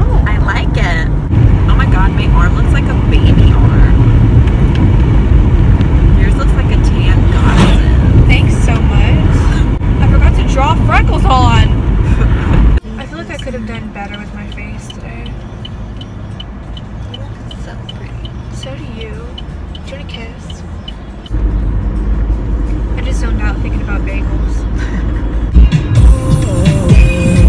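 Inside a moving car: steady road rumble with music playing and voices. The sound drops suddenly to a quieter stretch a little before halfway, then comes back louder after about 21 seconds.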